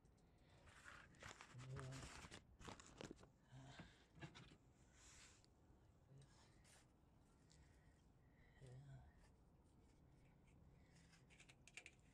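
Faint, scattered clicks and rustles of hands working plastic diesel exhaust fluid hoses and their connectors, busiest in the first few seconds.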